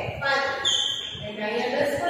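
A woman's voice speaking, with taps of chalk on a blackboard as she writes.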